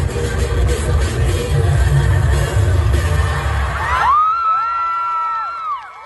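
Loud dance music with a heavy bass beat plays through stage speakers, then cuts off suddenly about four seconds in. The crowd follows with cheering and a few long, high-pitched whoops and screams.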